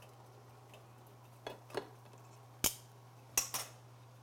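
Metal kitchen tongs clacking as a boiled lobster is lifted from the pot and set on a plate: a couple of soft clicks, then sharp knocks, the loudest a little under three seconds in, with a steady low hum underneath.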